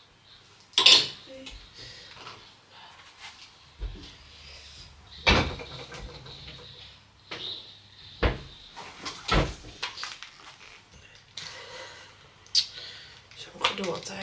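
Kitchen cupboard doors opening and closing and dishes being put away while a dishwasher is unloaded: a series of separate sharp knocks and clatters, the loudest about a second in.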